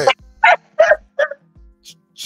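A dog barking three quick times.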